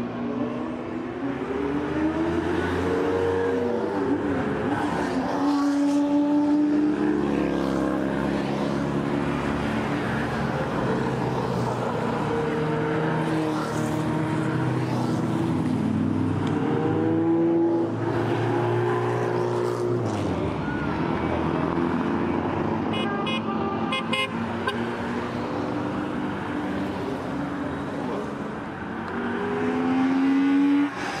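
Car engines revving and passing by, their pitch sliding up and down again and again, with a short run of rapid clicks late on.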